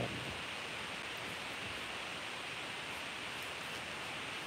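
Steady hiss of room tone and recording noise, with no other sound.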